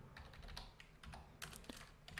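Faint computer keyboard typing: a handful of scattered, quiet keystroke clicks.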